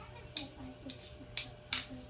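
About four short, sharp clicks or taps spread across two seconds, over faint low voices.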